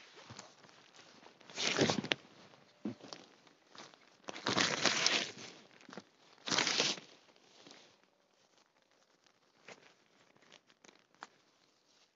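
A camouflage oxford-cloth tarp rustling and swishing as it is pulled over a hammock, in three loud bursts in the first seven seconds. After that come quieter small clicks and rustles of handling.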